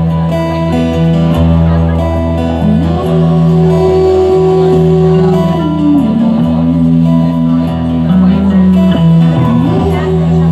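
Acoustic guitar strummed steadily, with a long held melody line over it that slides up a few seconds in, holds, slides down, and climbs again near the end.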